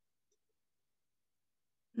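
Near silence: a gap in the video-call audio with nothing audible.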